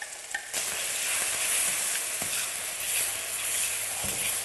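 Blended garlic, chilli and shallot paste dropping into hot oil in a wok and sizzling, starting suddenly about half a second in and then frying steadily as it is stirred with a metal spoon.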